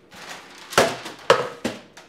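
Rustling as a cardboard box and a wrapped present are handled and rummaged through, with three sharp knocks in the second half as items are knocked and tossed about.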